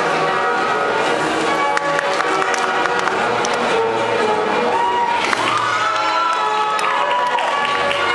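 Audience cheering and clapping in a large hall over music, with one long cheer from a single voice rising, held and falling about five seconds in.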